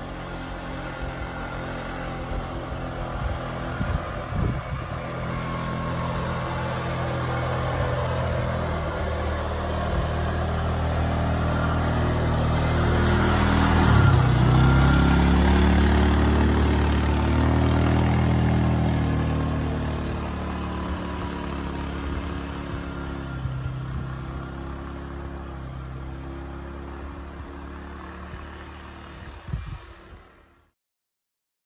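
Tracked ATV engine running as it drives up, passes close by and pulls away while towing a wooden snow roller; it grows louder to a peak near the middle, its pitch dropping as it goes by, then fades.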